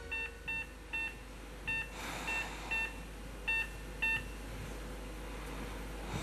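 Patient monitor beeping: about eight short, high beeps at an uneven pace over the first four seconds, then stopping. The last of a song's music fades out at the very start.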